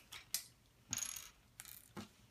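Small plastic Lego pieces clicking and rattling as they are handled and pressed together: a couple of sharp clicks, a short rattle about a second in, and another shortly after.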